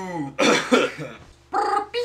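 A young man's voice: a drawn-out, falling vocal tone trailing off, then a few short, rough bursts about half a second in, and voice again near the end.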